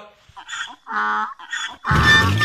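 Three short nasal honks like a goose's, each under half a second; the middle one is the loudest and holds a level pitch. They are a mocking noise aimed at the people just named.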